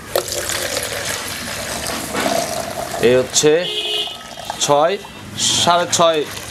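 Fresh milk poured in a steady stream from an aluminium pail into a plastic measuring mug, the pitch of the filling rising slightly as the mug fills, while the yield is measured out. Short bursts of voices break in from about three seconds in.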